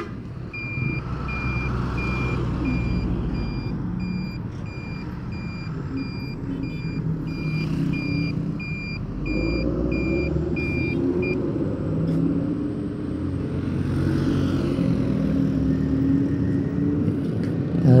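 A truck's reversing alarm beeping, evenly spaced high beeps at about two a second, stopping about eleven seconds in. Under it runs steady engine and road traffic noise.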